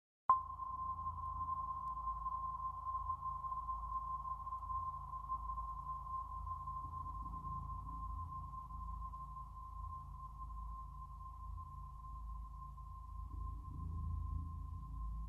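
A meditation bell struck once a moment in, its single clear tone ringing on and only slowly dying away, over a faint low rumble.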